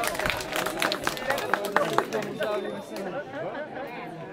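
A small group clapping over overlapping chatter; the claps thin out and stop about two seconds in, leaving mixed talking voices.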